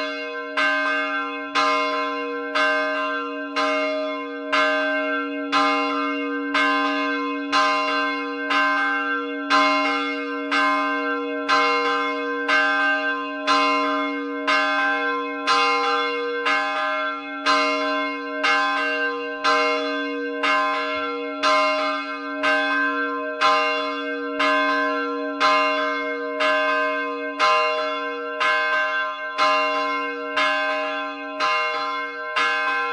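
Fatima Virgin bell, a 240 kg bronze church bell tuned to c2, cast by Lajos Gombos in 2009, swinging and struck by its clapper a little more than once a second. Each stroke rings on, its low hum carrying unbroken under the next stroke.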